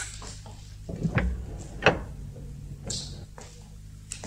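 Sound effect of a locked steel cabinet being unlocked and opened: two sharp metallic clicks, about a second in and just before the middle, then a brief rustle, over a faint low hum.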